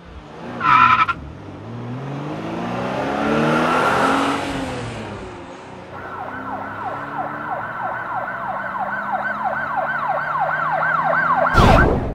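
Car-chase sound effects: a short tyre screech, then a car engine passing by that rises and falls in pitch and is loudest in the middle. From about halfway a police siren wails in quick sweeps, two or three a second, and a loud crash hits just before the end.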